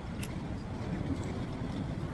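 Steady low street rumble on the phone microphone, with a short crisp crunch about a quarter second in and fainter ones later as a sour cream and onion potato chip is bitten and chewed.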